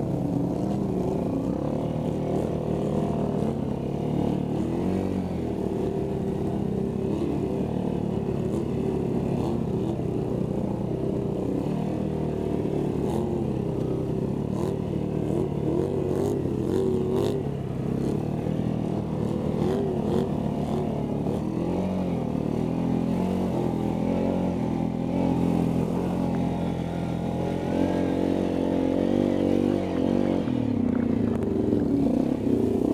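ATV engines running under load through deep mud and water, the nearest one's revs rising and falling with the throttle, with mud and water splashing around the wheels.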